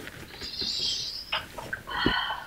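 A person getting up from a desk chair: a high hiss lasting about a second, a short click, then a low thump near the end as she stands.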